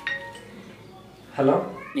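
Mobile phone ringtone, a marimba-like melody, its last note sounding right at the start. About a second and a half in, a man answers the call with a rising "hello".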